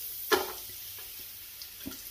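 Sliced garlic sizzling gently in hot olive oil in a pot, a steady hiss, with a light tap about a third of a second in and another near the end as the garlic is scraped off a plate into the pan.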